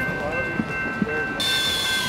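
Makita cordless impact driver running briefly, starting about a second and a half in with a high whine, driving a fastener into a railroad crossing gate arm's fitting.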